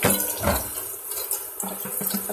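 Kitchen faucet running into a plastic bowl of cooked angel hair pasta as the noodles are rinsed, with a couple of sharp knocks in the first half-second.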